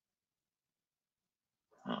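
Dead silence, then a man's voice begins near the end with a surprised "Oh".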